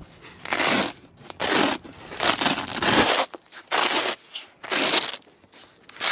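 Velcro hook-and-loop fastener on a U-Box container's fabric door cover being ripped apart in a series of short tears, about seven in a row.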